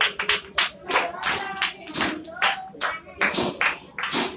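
A small group of children clapping their hands, uneven and unsynchronised, several claps a second.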